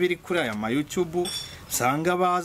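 A young woman talking, with a brief high metallic clink about one and a half seconds in.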